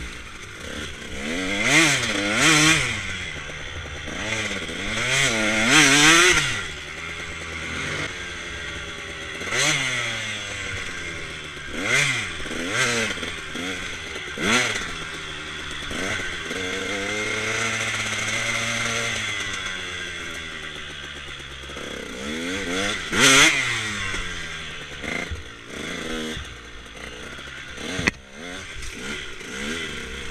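KTM two-stroke dirt bike engine revving up and down again and again as the throttle is opened and closed, with a steadier stretch at even throttle around the middle. Gravel clatters under the tyres.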